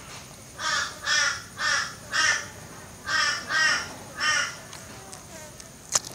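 A bird calling: seven short calls in two runs, four close together and then three more.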